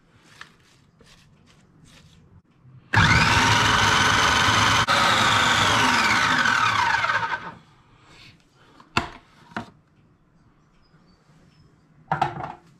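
Electric food processor chopping onion, garlic, parsley and dill: the motor starts abruptly and runs with a steady whine for about three seconds, then is switched off and its pitch falls as the blade spins down. A couple of sharp clicks follow.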